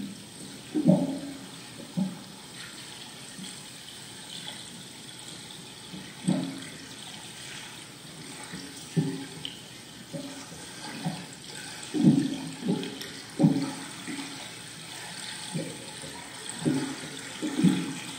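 Recorded water sounds from a sound installation: irregular low gurgles and sloshes with sudden onsets, one every second or two, over a faint steady hiss.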